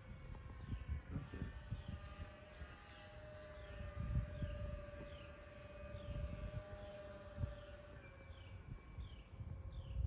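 Electric RC airplane's motor and propeller whining high overhead, a steady tone that steps up in pitch about a second in and drops back near the end as the throttle changes. Short falling bird chirps repeat over it, with gusts of wind rumbling on the microphone.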